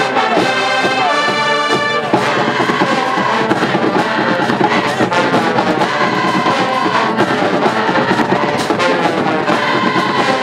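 High school marching band playing in the stands: brass instruments carrying a tune over a steady beat.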